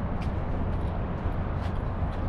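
Steady outdoor background noise, mostly a low rumble, with a few faint ticks.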